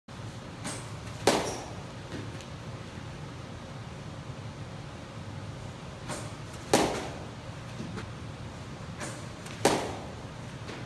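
Baseball bat hitting a pitched ball three times: a sharp crack about a second in, another past halfway, and a third near the end, each with a fainter click about half a second before it.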